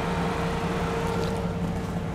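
Vehicle engine idling steadily, a low even hum with a thin steady whine above it.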